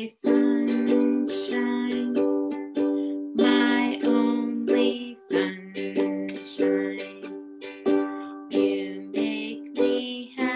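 Ukulele strummed in a steady, even rhythm, full chords ringing between the strokes, with a change of chord about halfway through.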